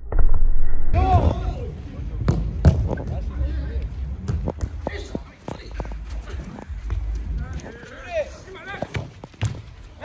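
Soccer ball being kicked and knocking on turf and boards: a string of sharp thuds at uneven intervals, loudest in the first second. Players' shouts come in shortly after the start and again near the end.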